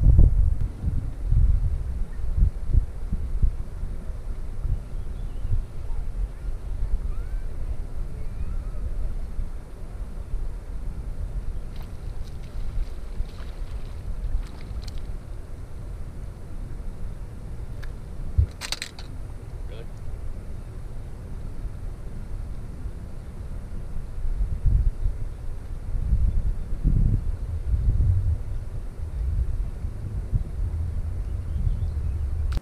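Wind buffeting the microphone in irregular low rumbling gusts, heaviest at the start and again near the end. One short sharp click-like sound cuts through a little past the middle.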